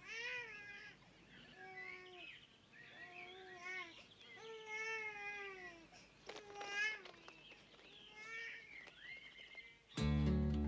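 Domestic cat meowing repeatedly: about eight separate meows, each bending in pitch, with one longer, drawn-out meow around the middle.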